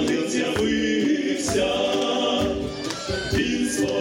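Small vocal ensemble of men's voices with a woman's, singing a Ukrainian folk Christmas carol in harmony, with long held chords that step to new pitches every second or two.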